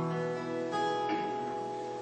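Acoustic guitar playing the introduction to a gospel song, strumming held chords that change under a second in.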